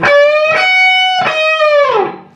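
Electric guitar playing a bent lead lick high on the neck, picked three times. The second string at the 15th fret is bent up while the 15th fret of the first string rings unbent alongside it. Near the end the bend is let down and the pitch falls.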